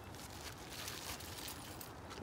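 Faint crinkling and rustling of a plastic Ziploc bag being handled.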